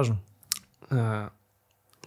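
A single sharp click about half a second in, between the end of one spoken word and a short voiced sound from a man.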